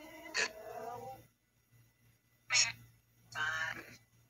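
Ghost box (spirit box) scanning radio, putting out short chopped fragments of voice-like sound: a wavering one about a second long at the start, then two shorter bursts in the second half.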